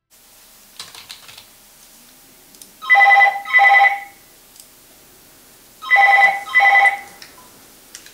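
A telephone ringing in a double-ring pattern: ring-ring, a pause of about two seconds, then ring-ring again. Before the first ring there are a few light clicks from the computer keyboard and mouse.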